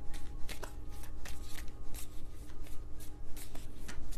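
A deck of tarot cards shuffled by hand: a run of quick, irregular card flicks and rustles.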